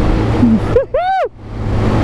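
Small 125 cc engine of a Chinese Honda XR125-replica supermoto running steadily at road speed, a low steady hum under heavy wind and road noise on the open-air camera microphone.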